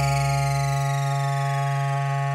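Electronic music breakdown: a held synthesizer chord with high tones gliding slowly downward, and the bass dropping out about a second in.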